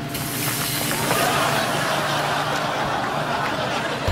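A sudden, loud rush of air and soot hissing out of the fireplace as the stuck flue gives way under the pull of the blower door, holding steady for several seconds.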